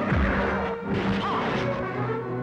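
Film fight-scene hit sound effects: a few sharp punch-and-whack impacts in quick succession, over dramatic background music.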